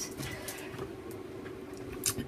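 Quiet room with faint handling noises, a few soft ticks and rustles as a plastic stencil packet is picked up, over a low steady hum.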